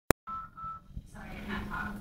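A sharp click, then two short electronic beeps, each made of two steady tones sounding together. After them comes room noise with a low hum.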